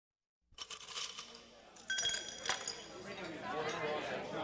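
Bar-room ambience: glasses clinking and ringing, starting about half a second in, then a crowd of voices chattering from about three seconds in.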